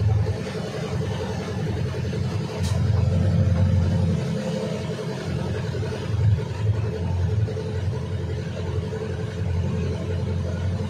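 Engine of a motor vehicle running steadily as it drives through floodwater, with a low, even rumble that swells slightly a few seconds in.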